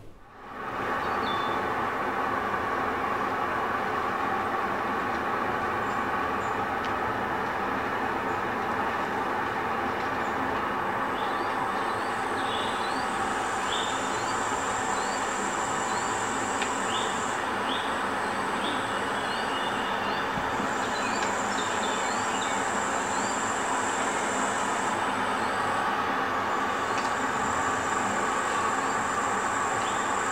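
A steady, dense rumbling ambience that fades in over the first second, with short rising high chirps from about ten seconds in and a high hiss that comes and goes in stretches of several seconds.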